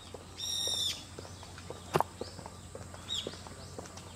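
Birds chirping in the trees: one longer call about half a second in, then short scattered chirps. A single sharp click about two seconds in.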